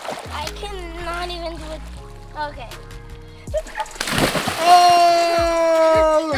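A child jumping into a swimming pool: one splash of water about four seconds in, over background music, followed by a long held note.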